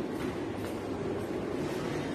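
Steady low rumble of a large indoor shopping mall's ambient noise, even in level throughout.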